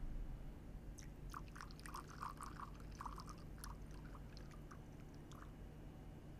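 Faint, irregular small crackles and clicks lasting a few seconds over a low room hum, as the music tails off at the start.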